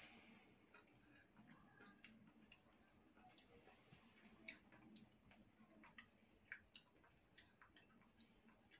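Near silence: room tone with faint, irregularly spaced small clicks.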